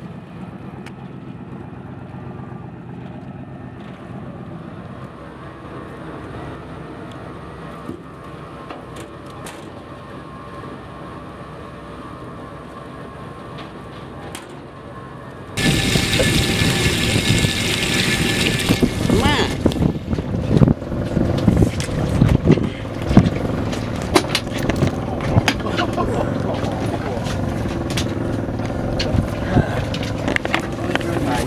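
A fishing boat's engine running steadily. About halfway through it cuts abruptly to a louder, noisier mix of engine, water and rapid clattering as a gillnet is hauled aboard over the bow.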